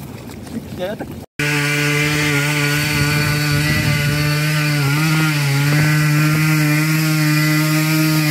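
Trail motorcycle engine held at high revs with a steady pitch, dipping briefly about five seconds in, as the bike struggles on a steep muddy climb. It starts abruptly just over a second in.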